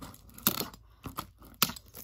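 A metal staple remover scratching and picking at the plastic shrink wrap on a box to break it open: a few sharp clicks with faint scraping between, the loudest about half a second in and again near the end.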